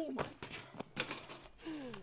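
BMX bike landing on asphalt after a hop off a wooden grind box: a handful of short knocks and rattles from the bike in the first second or so, with a voice's exclamation at the start.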